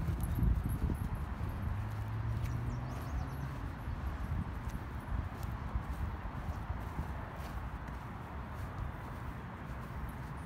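A Belgian Malinois mix lapping water at a dog-park drinking fountain, a run of quick small wet laps over steady background noise.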